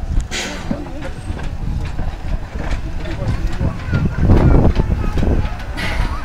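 230T steam tank locomotive E.332 moving slowly in reverse, with two short hisses of steam, about half a second in and just before the end, over a low rumble. People talk nearby.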